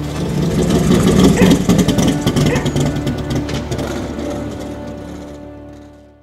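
The closing soundtrack: music joined by a loud, rough, fluttering rumble that swells about a second in, then fades out toward the end.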